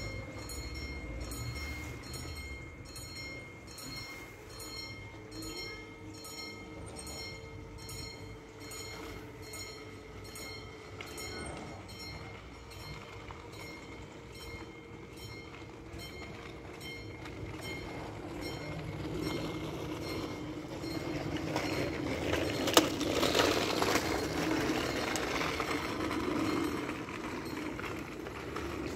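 Level-crossing warning bell ringing rapidly, about twice a second, while the crossing barriers lower. From about two-thirds of the way through, a rumble of an approaching train builds and grows louder, with one sharp click near the peak.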